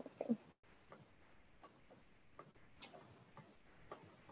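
Faint, irregularly spaced clicks of a computer mouse, about one every half second to second, with one sharper click shortly before three seconds in.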